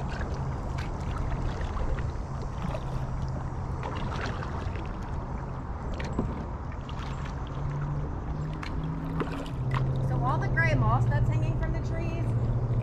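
Kayak paddling on calm water: irregular light splashes and drips from the paddle over a steady low hum. A voice comes in near the end.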